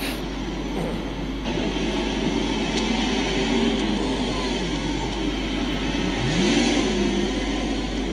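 Sports car engines revving and accelerating, their pitch sweeping up and down, with a strong rising rev a little after six seconds.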